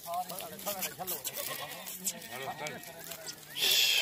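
Goats (castrated male bakray) bleating faintly with wavering, quavering calls. A short burst of hiss near the end is the loudest sound.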